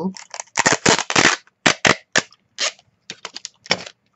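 Clear adhesive tape pulled off the roll of a desk dispenser in a series of short, loud rips.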